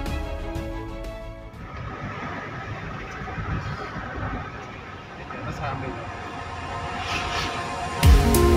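Intro music that stops about a second and a half in, followed by the steady road and engine noise of a car driving, heard from inside the cabin.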